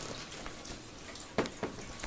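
Handling noise: a few soft knocks and rustles as a large framed poster is moved into place and set down.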